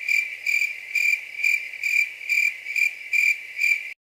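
Cricket chirping sound effect, evenly pulsed at about two chirps a second. It cuts in and out abruptly and is louder than the surrounding speech: the stock 'crickets' gag for an awkward silence.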